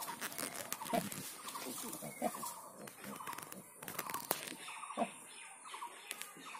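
Nursing sow grunting in short, repeated grunts about once a second while her piglets suckle, with short high chirps in the background.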